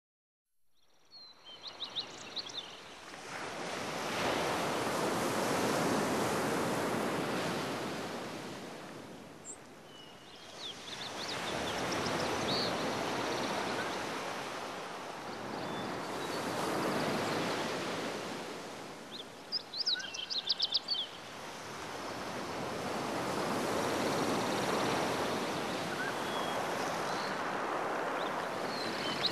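Sea waves washing in and drawing back in slow swells, each rising and fading over several seconds. Quick runs of high bird chirps come in about two seconds in, again around ten seconds in, and around twenty seconds in.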